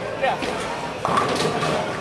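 Bowling alley hall sounds: several voices talking over a steady rumble, with a few sharp knocks from balls and pins, the clearest about a second in.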